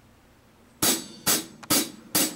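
Drum kit struck three times at an even pace, about half a second apart, starting a little past the middle after a quiet start: a drummer's count-in before playing.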